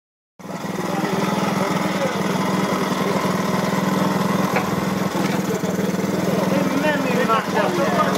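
Small internal-combustion engine of a miniature ride-on locotracteur running steadily as the locomotive moves slowly. The sound starts abruptly about half a second in.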